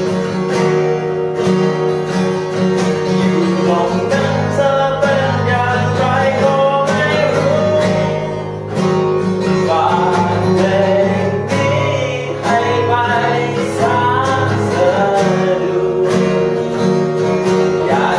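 Acoustic guitar playing a continuous chord accompaniment to a song, with a melody line carried above it.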